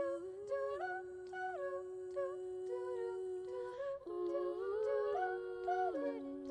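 Women's a cappella group singing in close harmony, with no instruments: a low note held steady for about four seconds under moving upper voices, then the voices climb together near the end.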